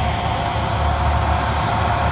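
Tracked demolition excavators with crusher jaw attachments working, their diesel engines running steadily: a low rumble with a steady hum over it.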